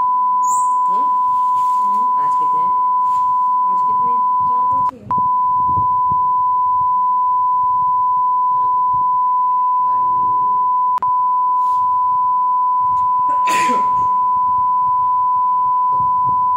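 Steady, loud, high-pitched test-tone beep of the kind that goes with a TV colour-bar screen, held at one unchanging pitch. It breaks off briefly about five seconds in and drops out for an instant near eleven seconds.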